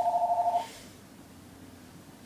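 Electronic two-note trilling tone, pulsing about ten times a second, that cuts off about half a second in; then faint room tone.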